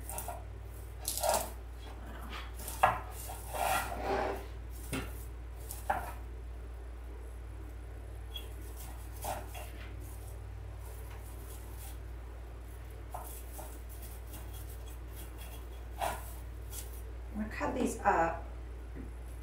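Artificial pine branches rustling and crackling as they are handled and pushed into a candle ring, in scattered short bursts with a few sharper snaps, the sharpest a little under three seconds in. A steady low hum runs underneath.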